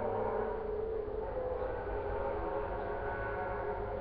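A car engine being raced, holding a steady droning pitch over a low rumble.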